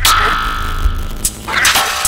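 Experimental electronic music: a sharp hit opens into a ringing, springy tone, the sound thins out briefly about a second and a half in, and another hit comes near the end, with the heavy bass beat pulled back.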